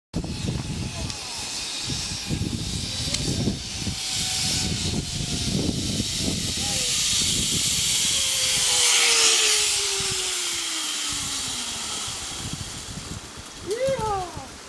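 Zipline trolley running along the cable: a hissing whir that swells as the riders pass close, about two-thirds of the way through, then fades, with a whine that slides steadily down in pitch as the trolley slows toward the landing platform.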